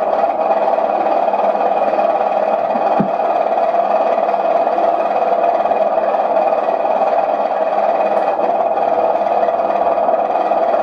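A steady, even noise, strongest in the middle range, with no distinct events except a faint low knock about three seconds in.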